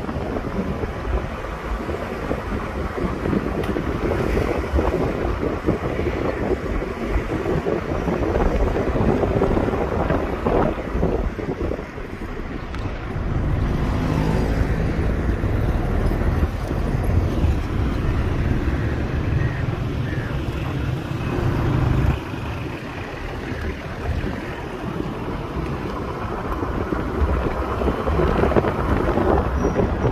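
Road and engine noise of a moving car, with wind buffeting the microphone. A deeper engine hum joins for several seconds in the middle and cuts off sharply.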